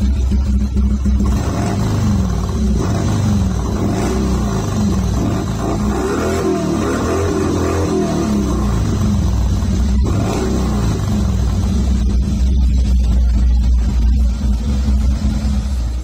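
A 1979 Harley-Davidson Ironhead Sportster's air-cooled V-twin running through a 2-into-1 exhaust at a steady idle, warm after a ride. It is shut off right at the end.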